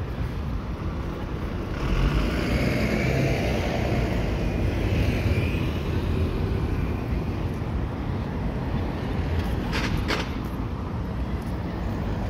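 Road traffic on a city street: a steady low rumble with a passing vehicle swelling up from about two seconds in, and a few sharp clicks near the end.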